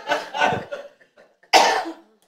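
A person coughing once, a short sharp cough about one and a half seconds in, after a brief voice sound at the start.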